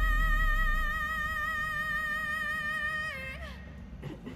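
A female pop singer, live, holds a long high belted note with steady vibrato over a low accompaniment. She releases it with a short downward slide about three seconds in, and the music fades out.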